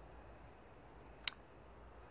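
Quiet background with one short, sharp click a little past halfway.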